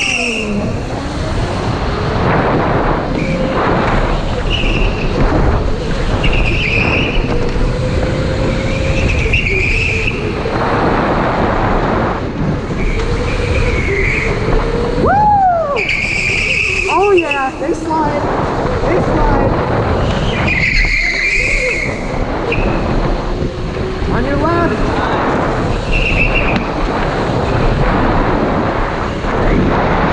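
Electric go-kart driven hard around a tight track, heard from onboard: a steady rushing noise under a motor whine that rises and falls in pitch with speed, and short tire squeals that come again and again through the corners.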